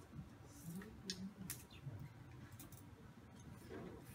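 Faint, scattered clicks and small handling noises, with a faint low murmur beneath them.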